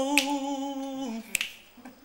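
A man singing unaccompanied holds one steady note for about a second, letting it dip and fade out. A single sharp click follows shortly after.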